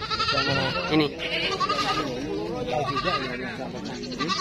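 Goats bleating several times, a quavering call at the start and more calls after it, with men's voices talking alongside.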